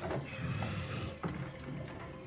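Soundtrack of a television battle scene playing back: a dense low rumble with a few short, sharp knocks through it.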